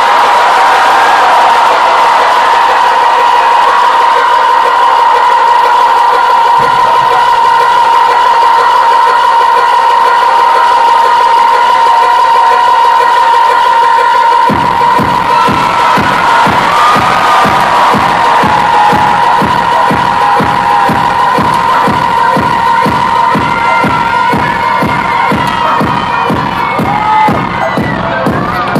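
Live electronic dance music played loud over a venue PA and recorded from within the crowd, with the crowd cheering: a held synth tone, then about halfway through a kick drum comes in on a steady four-on-the-floor beat of about two beats a second.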